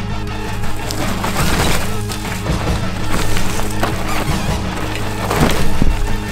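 Music soundtrack with a steady low beat, over the crunching and crackling of a mountain bike's tyres through dry leaves and twigs on a forest trail, loudest near the end.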